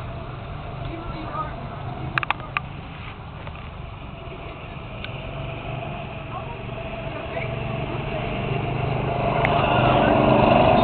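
Go-kart engines running on the track, the sound growing louder over the last few seconds.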